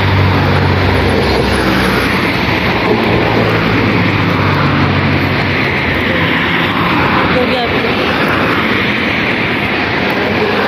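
Road traffic passing at a street crossing: a car's engine hums close by for the first half, then fades, over a steady rush of traffic noise.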